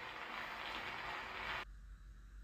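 Steady hiss and low rumble of an Edison cylinder phonograph still playing a Blue Amberol cylinder after the song has ended: the stylus is riding the cylinder's surface past the end of the recording. It cuts off suddenly about one and a half seconds in.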